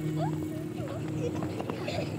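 Several children's running footsteps on a dry dirt field, a quick uneven run of light footfalls, with a few faint children's calls in the background.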